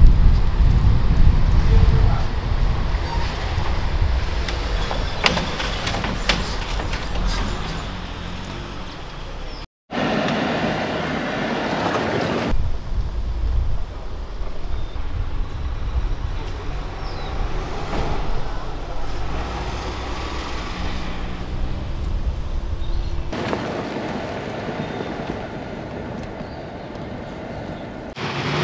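Vehicle engine and tyre noise as an SUV drives off a hand-cranked river ferry over its metal deck plates, with a couple of sharp knocks about five and six seconds in. After a brief dropout near ten seconds comes steadier car and road noise.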